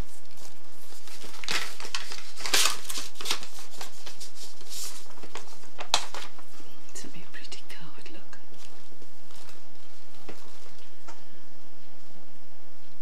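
Crinkling and rustling of a plastic-wrapped calendar and a paper card being handled. It is densest in the first half, with a sharp snap about six seconds in, then lighter rustles.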